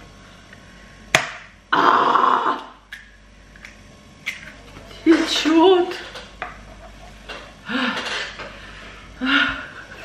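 A raw egg cracked open over a plastic-covered heap of flour, with a sharp crack about a second in and then a second-long burst of noise. A few short vocal exclamations follow later.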